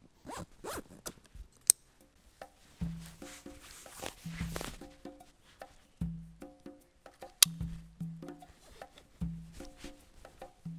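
Zipper on a 1000D Cordura nylon backpack being worked, with rasps and small clicks of the pull and hardware. From about two and a half seconds in, light percussive background music with a repeating low note runs underneath, with a couple of sharp clicks among it.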